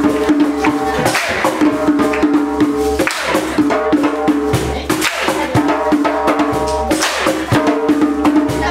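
Live acoustic band music: a fiddle and a strummed acoustic guitar playing an upbeat tune, with percussion knocking out a steady beat.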